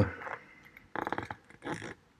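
A quick run of computer mouse clicks about a second in, as a menu is opened, followed by a brief soft noise near the end.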